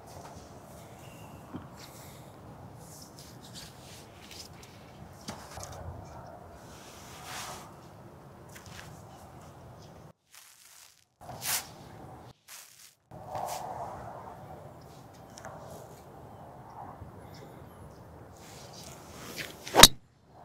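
A golf driver striking a teed-up ball: one sharp, loud crack just before the end. Before it there is only a low outdoor background with a few faint shuffles as the golfer sets up.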